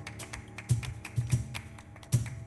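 Flamenco palmas: sharp hand claps played in an uneven, syncopated rhythm over flamenco-jazz music with low, thudding notes.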